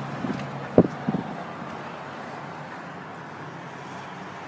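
Steady outdoor background noise of a car lot with a faint low hum, broken by a sharp click a little under a second in and a few small knocks.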